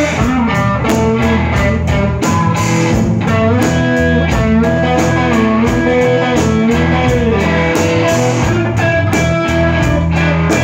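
Live blues-rock band in an instrumental break: a lead electric guitar plays gliding, wavering notes over a bass line and a steady drum beat.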